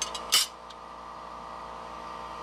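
A vacuum pump running with a steady hum, drawing on a home-made vacuum-chuck fixture plate, with one short metallic clack about a third of a second in as a brass plate is shifted on the aluminium fixture.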